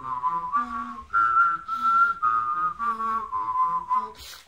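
A person whistling a slow melody in long held notes, while a lower hummed or sung voice line sounds along at the same time. The tune pauses briefly about a second in.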